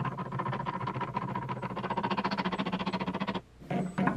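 A homemade glue-strength test rig is running: its drive turns a large wooden gear and threaded rod that pushes up on a glued wood sample. It gives a steady, rapid, even clicking over a steady hum and stops short about three and a half seconds in.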